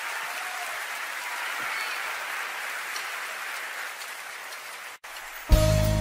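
Audience applauding steadily at the close of a live song. The clapping cuts off abruptly about five seconds in, and half a second later the next song's instrumental introduction starts, with bass and held notes.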